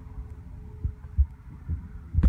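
Wind buffeting the phone's microphone: a low rumble with a few irregular thumps, over a faint steady hum.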